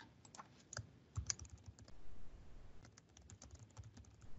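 Faint typing on a computer keyboard: a quick, irregular run of key clicks as a short sentence is typed.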